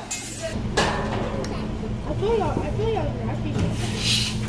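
Voices and laughter around a restaurant table, over a steady low hum.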